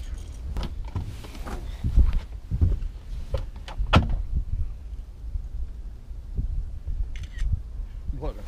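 Knocks and thumps of a blue catfish being lifted out of a landing net in a boat: a few sharp knocks, the loudest about two and four seconds in, over a steady low wind rumble on the microphone.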